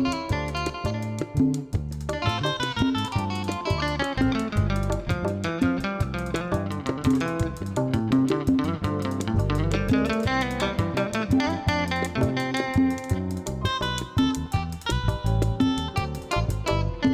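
Live band instrumental led by an acoustic-electric guitar playing a quick picked melody line, over bass and hand drums.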